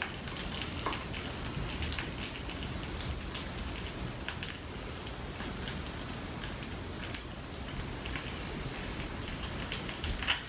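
Sausage stuffing: a steady soft crackle, like light rain, as ground venison is forced into the casing and the filled sausage is handled and coiled on the counter, with scattered light clicks.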